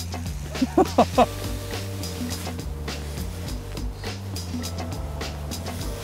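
Background music with a steady low bass, and a few short voice sounds about a second in.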